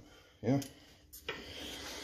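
A man says "yeah", then a single click and faint rubbing: handling noise from things moved on the workbench.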